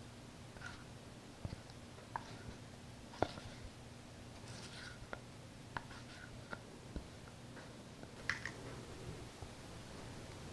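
Faint scraping and soft, irregular clicks of a silicone spatula working thick cake batter out of a plastic mixing bowl into a metal springform tin, over a low steady hum.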